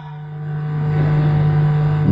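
Steady low electrical hum on the microphone line, with a faint noise swelling gradually behind it.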